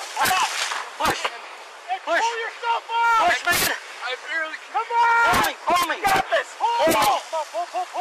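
Short, strained shouts and grunts from several men hauling a man out of icy water, too broken to make out as words, over a steady hiss. Sharp knocks scattered throughout come from the body-worn camera bumping and rubbing against clothing.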